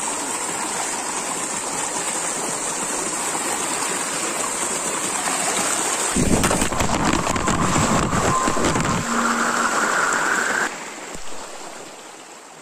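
Steady rush of a rocky stream at the foot of a waterfall. From about six seconds in, a loud low rumbling with knocks comes over it as the camera is moved close to the rocks and water. The sound starts to fade near the end.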